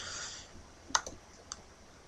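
Two faint clicks about half a second apart from a computer mouse button, as a settings item is selected.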